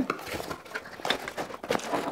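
Cardboard box flaps being pulled open and a boxed lock lifted out: a run of irregular scrapes, rustles and small clicks of cardboard and packaging being handled.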